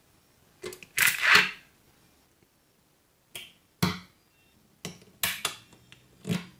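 Small neodymium magnet balls clicking and clacking as they snap together and are set down on a hard table. The loudest clatter comes about a second in, followed by scattered single clicks and a quick run of clicks near the end.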